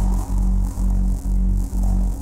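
Electronic sound-design drone: a deep buzzing tone that pulses evenly about twice a second, with brief dips between pulses.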